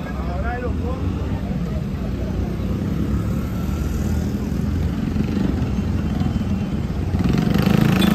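Street traffic with motorcycle engines running, growing louder near the end as a motorcycle comes close. Voices are heard briefly at the start.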